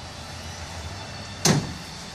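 Rear flip seat of a Club Car golf cart being folded down into a flat cargo bed, landing with a single sharp clunk about one and a half seconds in.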